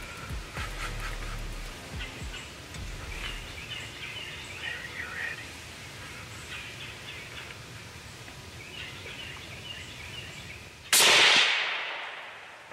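Birds calling faintly, then near the end a single loud rifle shot whose report rolls away over about a second. The shot drops the buck.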